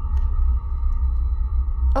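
Background music of the radio play: a deep, steady drone with faint held tones above it.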